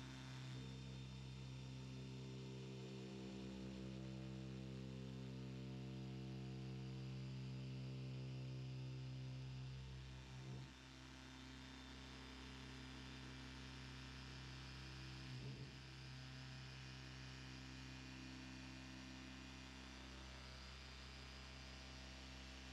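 Dual-action polisher with a short-nap wool pad running on a car's clear coat, heard as a quiet, steady motor hum that falters briefly twice, about halfway through and again a few seconds later. It is cutting 600-grit sanding marks with compound.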